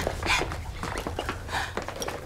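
A woman breathing hard in short, quick panting breaths after a physical struggle.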